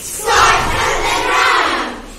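A group of children giving a loud shout together, many voices at once, lasting about a second and a half.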